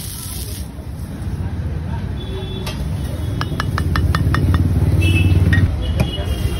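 Water hissing off a hot iron dosa griddle, dying away within the first second. A quick run of about eight light metal clinks follows from the ladle and steel bowl, then a low vehicle rumble that builds and cuts off near the end.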